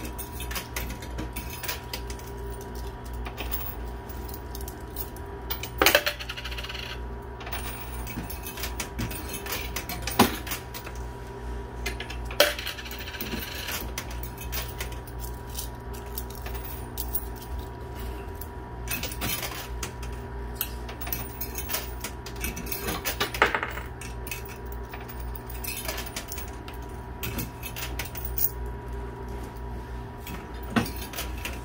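Quarters dropping and clinking in a coin pusher arcade machine, with a few louder sharp metallic clinks among many small ticks, over a steady low hum.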